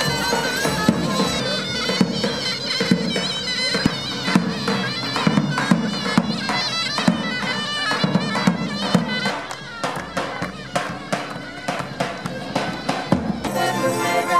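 Turkish folk music played on the march: a reed wind instrument plays a quick, wavering melody over a steady held drone. The sharp strikes of a davul, the large double-headed Turkish bass drum, stand out more in the second half.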